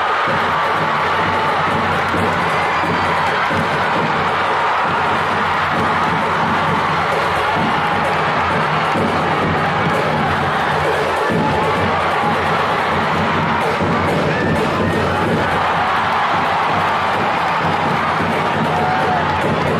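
Large arena crowd cheering and shouting without a break.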